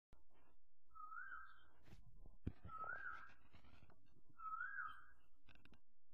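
Three identical short whistled calls, each rising then falling in pitch, spaced about a second and a half apart, with a single sharp click between the first two.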